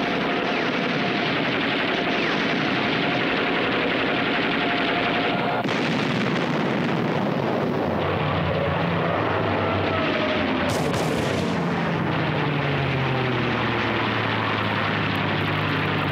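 Rapid, continuous shipboard anti-aircraft gunfire, shots overlapping into a dense barrage. An aircraft engine drones underneath, its pitch falling in the second half.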